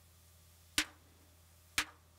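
Electronic snare drum from a Nord Drum, fired by modular-synth trigger pulses, hitting twice about a second apart. Each hit sounds once here, without the double trigger that the trigger signal sometimes causes.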